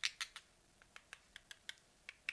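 Light, uneven clicks and taps on a small frosted plastic nail-prep bottle as it is tapped and handled in gloved hands, about ten in two seconds, to tell whether it is glass or plastic.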